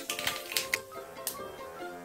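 Dried red chillies crackling in hot oil in a wok, a handful of sharp separate pops in the first second and a half, over soft background music.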